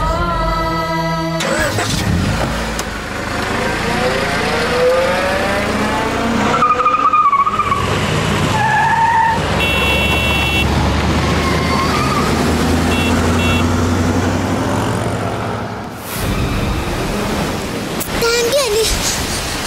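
A car driven fast: the engine and road noise run steadily, with wavering tyre squeals about seven and nine seconds in and a short high tone about ten seconds in. The sound dips briefly near the end.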